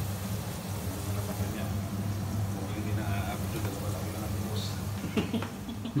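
Battered squid rings (calamari) frying in oil in a pan, a steady sizzle over a low steady hum.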